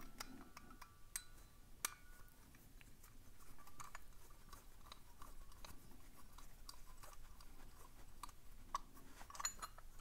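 Faint metallic clicks and scrapes of a brass key being pushed into and turned in the side keyway of a brass puzzle padlock, with one sharper click about two seconds in and a few more clicks near the end as the shackle comes free.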